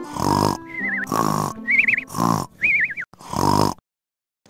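Cartoon snoring sound effect: four short snores about a second apart, the first three each followed by a high wavering whistle, cutting off just before the end.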